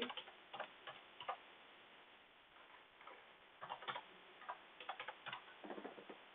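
Faint computer keyboard keystrokes: a few single taps in the first second or so, then a quicker run of keys in the second half.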